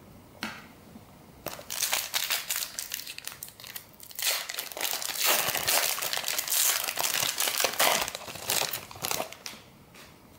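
Shiny trading-card pack wrapper being torn open and unwrapped by hand: dense crinkling and crackling that starts about a second and a half in, dips briefly near the middle and dies away just before the end.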